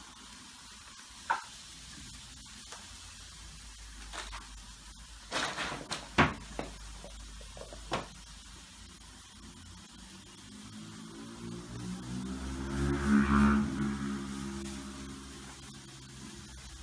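Crinkly foil-lined plastic bag giving short sharp crackles as cats paw and nose at it, with a cluster of crackles about five to seven seconds in. A low, sustained pitched sound swells and fades over the last few seconds.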